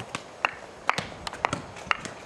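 A child walking in single-tooth wooden geta (ippon-geta) clogs: a quick, uneven run of sharp wooden clacks, about four or five a second.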